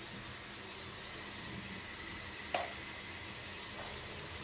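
Onions and meat sizzling steadily in pans on the stove, with a single sharp clink about two-thirds of the way through.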